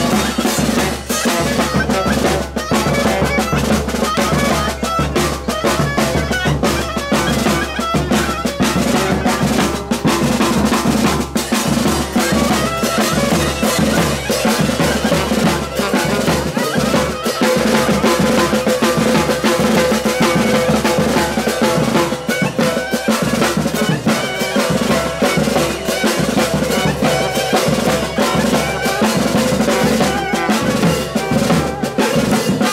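Live Balkan brass band playing loudly: a large bass drum and snare beaten in a dense, fast rhythm under saxophone, trumpet and clarinet, with a long held note from the horns in the second half.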